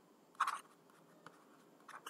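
A brief, quiet scratch of a pen writing about half a second in, followed by a couple of faint ticks.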